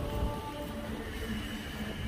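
Escalator running: a steady mechanical rumble, with a low hum and a faint high whine setting in about a second in.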